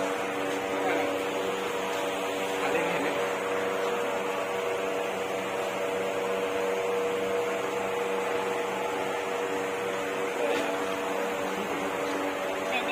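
A steady electrical or mechanical hum made of several held tones, unchanging throughout, with faint voices in the background.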